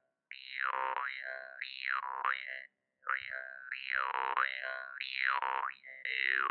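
Glazyrin Compass jaw harp (Russian vargan) played, its twanging drone carrying overtones that sweep up and down as the mouth shapes them. Two phrases with a short break about halfway through.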